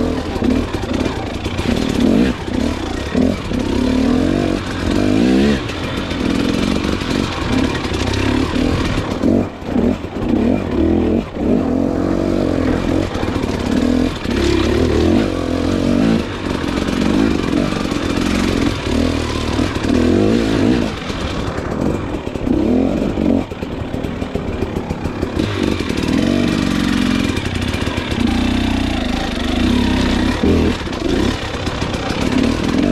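KTM 300 XC two-stroke enduro motorcycle engine revving up and down continuously as the bike is ridden over rough trail, with the clatter of the bike over roots and rocks.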